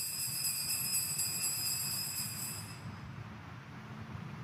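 Altar bells (sanctus bells) ringing in rapid jingling shakes for the elevation of the consecrated host; the ringing stops about two and a half seconds in.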